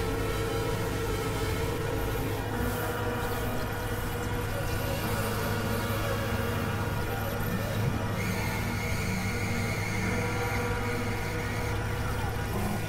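Experimental electronic drone music from synthesizers: a dense, unbroken layering of sustained tones over a steady low hum, with a high tone joining about eight seconds in.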